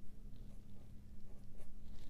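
Felt-tip pen scratching faintly on paper as a multiplication sign and a numeral are written.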